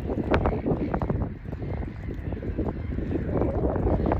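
A large flock of gulls squawking in a dense, continuous chatter of short calls, over a low rumble of wind on the microphone. The gulls are jostling and fighting for roosting places, as the speaker guesses.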